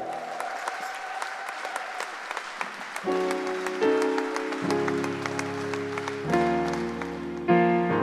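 Audience applause after a song, a spatter of claps that thins out; about three seconds in, a Yamaha digital piano begins soft sustained chords under the fading clapping.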